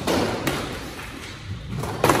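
Squash rally: the ball is struck by a racket and hits the front wall about half a second later, two sharp knocks with a short echo in the enclosed court. Fainter knocks of the ball follow near the end.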